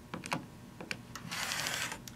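Rotary cutter blade being run along an acrylic ruler, slicing through quilt fabric on a cutting mat. A few light clicks come first, then a crunchy cutting sound from about halfway in to near the end.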